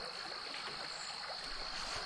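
A quiet, steady, high-pitched trilling chorus of calling frogs and insects, over a faint even hiss.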